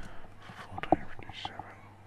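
Quiet, indistinct whispering or low talk, with a few sharp clicks, the loudest a little under a second in, over a steady low hum.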